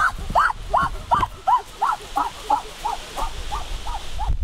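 An animal calling in a rapid series of short yelps, each rising then falling in pitch, about three a second, growing fainter toward the end.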